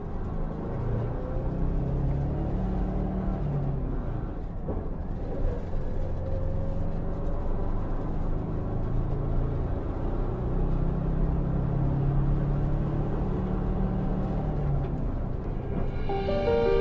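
Steady low rumble of a moving vehicle heard from inside, with soft music faintly underneath.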